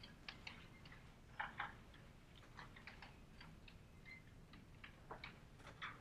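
Faint, irregular taps and short scratches of chalk on a blackboard as someone writes.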